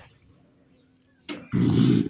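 Quiet at first, then about a second and a half in a short, rough growl from a raccoon.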